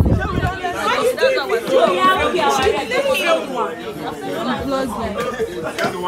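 A group of people chatting at once, many voices overlapping with no single speaker standing out. A low rumble underneath cuts off about half a second in.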